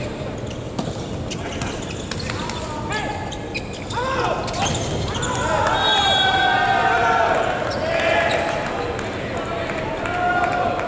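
Indoor volleyball rally: sharp ball hits and shoe squeaks on the court, then several players shouting together for about two seconds as the rally ends and the point is won, all echoing in a large hall.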